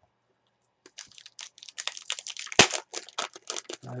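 A foil trading-card pack wrapper being torn open by hand, crinkling and crackling for about three seconds with one sharp rip about halfway through.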